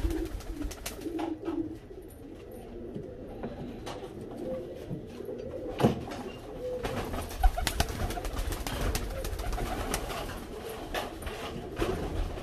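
Teddy pigeons cooing softly in a small concrete loft, with scattered sharp clicks and wing flutters from birds moving about and landing on the perch, busier in the second half.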